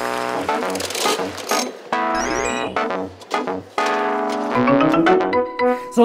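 A short keyboard jingle: held chords in three blocks of about two seconds over a pulsing bass, with a rising run of notes near the end.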